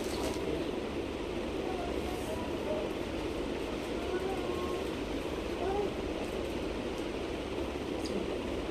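Steady background hiss with faint distant voices, and a soft rustle of cotton fabric as a khadi cotton sari is unfolded and held up.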